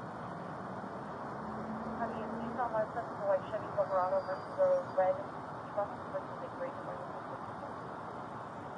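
A muffled, unintelligible voice in a run of short sounds through the middle, over steady street background noise.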